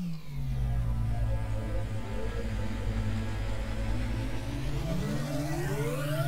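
Cinematic transition sound effect under a section title card: a deep, steady drone that starts suddenly, with a tone sweeping upward in pitch over the last second or so.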